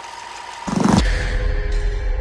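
Horror film score: a quiet held tone, then a sudden loud low hit about two-thirds of a second in, giving way to a deep rumbling drone with steady tones above it.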